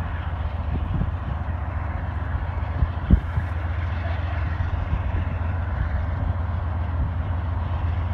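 Low, steady rumble of distant diesel freight locomotives on the line below, with one brief thump about three seconds in.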